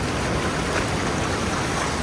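Steady rush of ocean surf, with wind blowing on the microphone.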